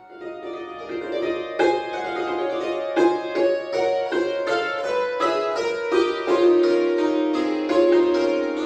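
Cimbalom played solo with mallets: rapid struck notes ringing into one another. It comes in softly after a brief pause and grows louder over the first second or two.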